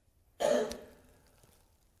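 A man clears his throat once, about half a second in, a short rough burst that fades within half a second.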